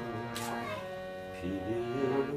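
Harmonium holding a steady chord while a man sings, his voice sliding up into a new phrase near the end.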